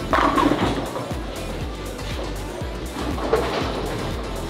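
Background music over bowling-alley noise: a bowling ball rolling down the lane, with a clatter of pins just after the start and sharp knocks later.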